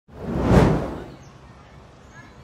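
A whoosh sound effect that swells and fades within about the first second, followed by a faint hiss.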